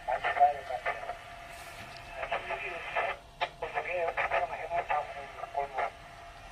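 A voice received over an amateur radio transceiver's speaker, thin and narrow-sounding, with a short pause about three seconds in.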